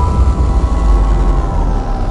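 Tail of a logo-sting sound effect: a deep rumbling boom with a few faint steady tones above it, slowly dying away.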